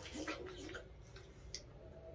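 Faint wet clicks and smacks of watermelon being bitten and chewed, a few irregular crisp clicks.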